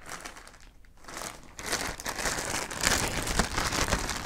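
A thin clear plastic bag crinkling as it is handled and pulled open. It is faint at first and gets louder from about a second in.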